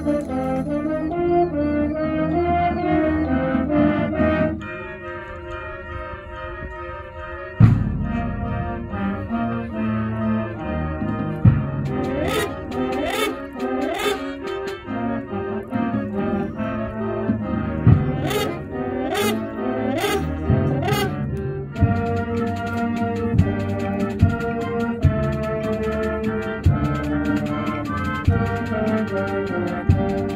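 Middle school concert band playing: brass and woodwinds hold sustained chords over a steady low bass. The band drops quieter about four seconds in, then comes back in full on a loud hit, with sharp percussion strikes in the middle of the passage.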